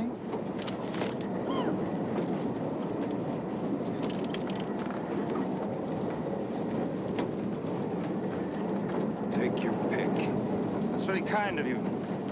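Steady rumble of a railway carriage rolling along, heard from inside the car, with a few words of speech near the end.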